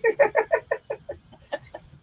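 A woman laughing in a quick run of short bursts, about six a second, fading toward the end.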